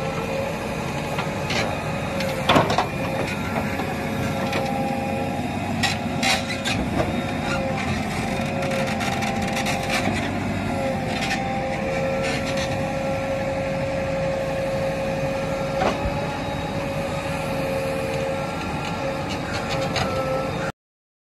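JCB backhoe loader running steadily with a constant, slightly wavering whine while its backhoe digs a pit and dumps soil. Scattered short knocks and clanks come from the working arm and bucket.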